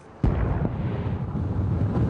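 Explosions from a military strike on a group of buildings: a sudden blast about a quarter second in, then a sustained low rumble.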